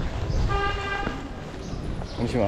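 A vehicle horn gives one steady toot of about half a second, about halfway through, over a low street rumble.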